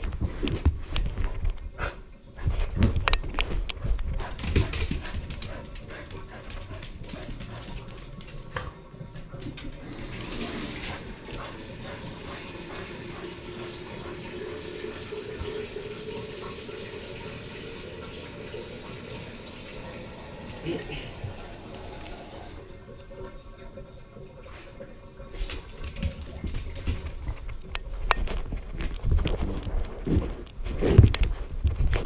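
A harness-mounted action camera scrapes and knocks against carpet and fur as a freshly showered dog rubs and rolls on the floor. Partway through, a steady hiss of running water takes over for about twelve seconds, then the rubbing and knocking return near the end.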